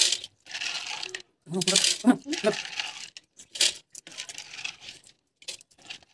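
Small coloured aquarium pebbles clattering against the glass bottom of a fish tank as they are poured and spread by hand, in several short bursts.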